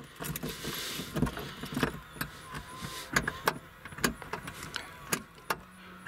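Metal key blade probing inside the slot of a 2015+ Nissan Murano's plastic tailgate trim, making scattered light clicks and scrapes as it catches the spring-loaded manual trunk release, with the keys on the ring jingling.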